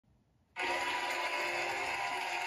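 Television audio cutting in abruptly about half a second in: a talk show's opening theme music with studio-audience applause, heard through the TV's speaker.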